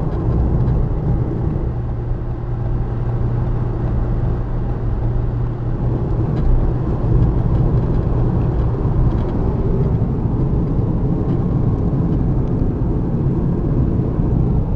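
Steady cabin noise of a car moving at road speed: a low engine hum under an even rumble of tyres and road.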